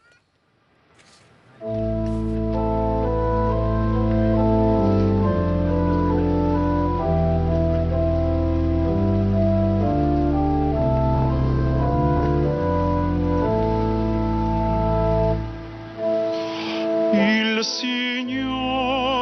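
Organ playing a slow introduction of long held chords over a sustained bass, starting about two seconds in. The introduction leads into the responsorial psalm. Near the end the organ drops away and a solo male voice begins singing with vibrato.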